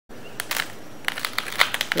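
Irregular sharp clicks and crackles over a steady hiss, a few at first and coming faster in the second second.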